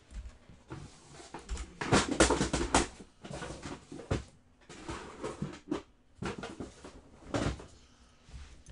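Handling noise: a run of knocks, clicks and rustles, busiest about two seconds in.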